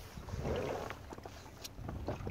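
Wind buffeting the microphone over choppy water, with waves lapping against the side of a small boat and a few faint knocks.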